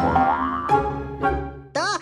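Cartoon background score with a comic sound effect that glides down in pitch over the first half-second, then a sharp click a little later. Steady musical tones hold underneath, and a boy's voice begins near the end.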